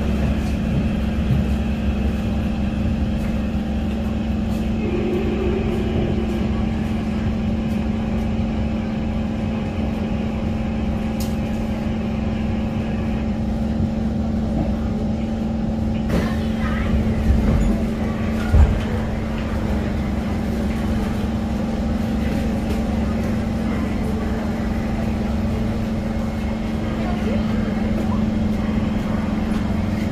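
Interior noise of a Kawasaki Heavy Industries C151 metro train braking to a stop at a station. A steady hum from the train's equipment runs throughout, and a faint high whine fades out about halfway through as the train comes to rest. A couple of thumps follow a few seconds later, and the doors open near the end.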